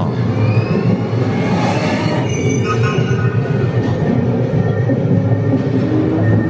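Pre-show teleportation sound effect played over the room's speakers: a loud, steady rumble with rising sweeping tones in the first second or two, mixed with music.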